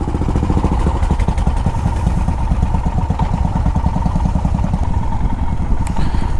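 Royal Enfield motorcycle engines idling close by, a steady rapid beat of exhaust pulses.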